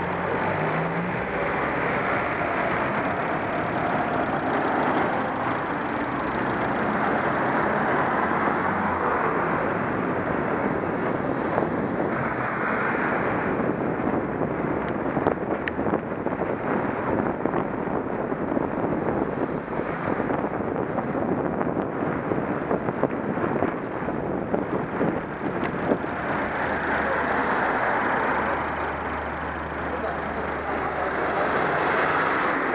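Steady rush of road traffic and moving air heard from a cyclist's helmet-mounted camera, with car and van engines in slow traffic. Scattered short clicks and rattles run through the middle stretch, and a low engine hum rises near the end.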